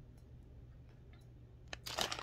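Quiet room tone with a steady low hum and a few faint clicks. Near the end comes a brief crinkle as the plastic pouch of dried cranberries is handled.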